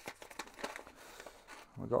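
Paper seed packet rustling and crinkling in the hands as it is opened, with faint irregular crackles.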